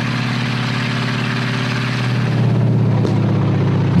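Heavy vehicle engines running steadily, growing louder about halfway through.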